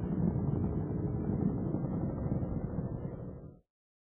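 Space Shuttle Atlantis's rocket engines heard from the ground during ascent as a steady low rumble. It fades and cuts off suddenly about three and a half seconds in.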